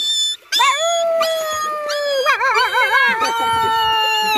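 A boy imitating a dog's howl with his voice: one long howl that starts about half a second in, slides slowly down in pitch with a wavering stretch in the middle, and is still going at the end.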